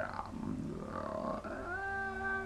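A man's long, whiny wailing cry made with his mouth wide open, starting about a second and a half in after a low murmur, sliding up and holding a high pitch.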